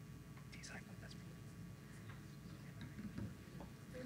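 Faint, hushed whispering between two people near a microphone, over a steady low hum.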